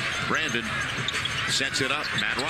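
NBA game broadcast audio: a basketball being dribbled on the court amid arena crowd noise, with a commentator's voice underneath.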